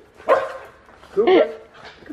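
Pet dog barking excitedly in short barks while jumping up in greeting, with a woman's voice calling to it.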